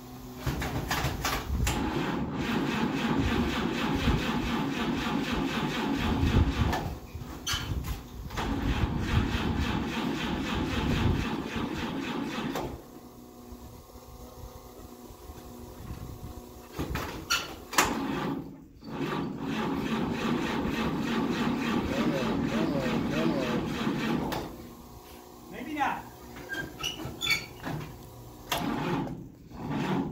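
Old fire truck engine being cranked by its starter in three long attempts, with short clicks between them, and never catching: a cold-weather no-start.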